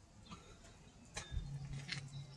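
Faint footsteps on a concrete sidewalk, a few soft ticks spaced about a second apart, with a low steady hum coming in about halfway through.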